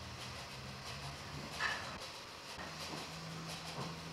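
Toy model train running on its track, a low steady hum.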